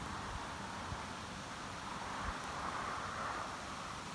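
Steady outdoor background hiss with light wind on the microphone, fairly quiet and even, with nothing standing out.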